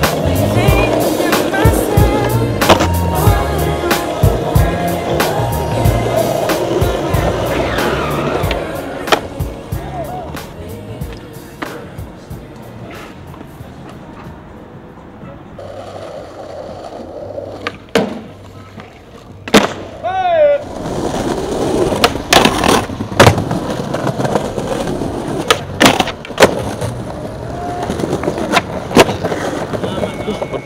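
Skateboards rolling on stone paving, with sharp clacks of boards popping and landing, heard under music that fades out about ten seconds in. From there the rolling and the clacks are heard alone, with several loud sharp clacks in the last dozen seconds.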